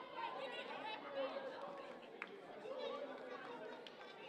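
Indistinct chatter of several voices echoing in a gymnasium, with a brief sharp sound about two seconds in.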